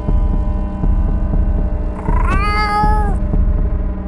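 A cat meows once about two seconds in: a drawn-out call that rises at first and then holds for about a second. Under it runs a steady low drone with regular ticking.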